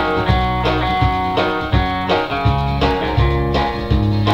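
Electric guitar playing an instrumental break of a country song, with a steady alternating bass-note rhythm of about two notes a second under plucked chords.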